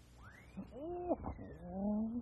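Cartoon soundtrack effects: a thin whistle that rises and then slides slowly down, under a short yowling cat-like cry, with a brief low note near the end.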